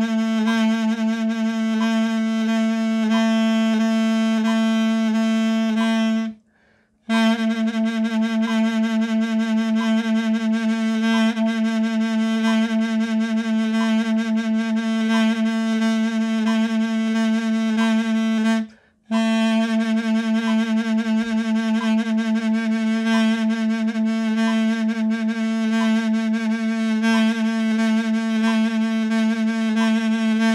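A mey, the Turkish double-reed wooden folk instrument, playing a vibrato exercise of repeated notes on one pitch (la, A), the tone wavering with vibrato. It pauses twice briefly for breath, about six seconds in and again near nineteen seconds.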